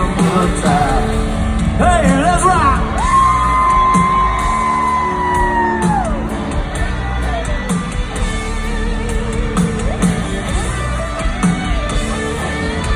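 Live country-rock band playing loud through a concert PA, heard from within the crowd, with a steady drum beat. A long held high note comes in about three seconds in, then slides down and ends around six seconds.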